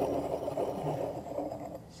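Wine glass feet sliding in circles on a wooden barrel head as white wine is swirled, a soft scraping that fades away over the two seconds.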